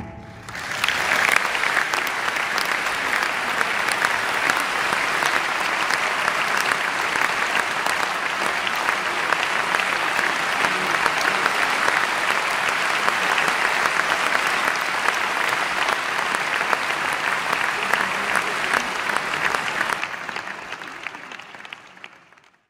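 Large audience applauding steadily after the orchestra's final chord. The applause fades out over the last couple of seconds.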